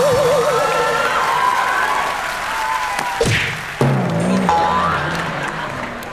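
Studio audience laughing and applauding, with stage music playing over it; a wavering musical tone sounds in the first second.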